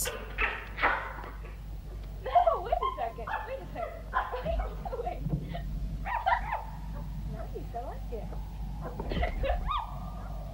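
Film soundtrack of a girl laughing and a chimpanzee calling as they play, heard from far off, over a steady low hum.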